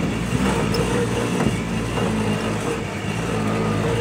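Engine of a vehicle being ridden over a rough dirt track, running steadily with a low hum and road noise, heard from on board.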